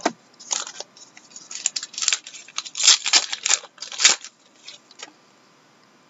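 Hockey trading cards and their pack wrapper being handled at a table: a run of short crinkling and sliding rustles that grows busier in the middle and dies away about five seconds in.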